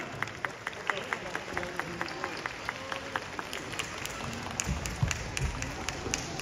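Spectators clapping in a fast, even rhythm of about four to five claps a second, which fades after a few seconds. Near the end come a few dull thuds from the ring, with faint voices in the hall.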